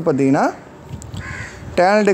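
A man's voice speaking: a drawn-out syllable, a pause of about a second, then speech again near the end.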